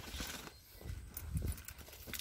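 Faint, irregular footsteps on dry, cracked mud, a few soft knocks with light scuffing.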